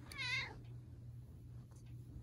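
A long-haired domestic cat meowing once, a short meow with a wavering pitch in the first half-second.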